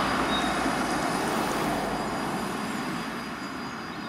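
Road traffic noise: a passing vehicle's steady rush slowly fading away, with a faint steady high-pitched tone over it.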